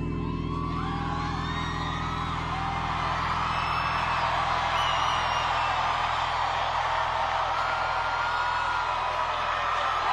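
Concert crowd cheering, with many whistles and whoops, over the band's steady held chords.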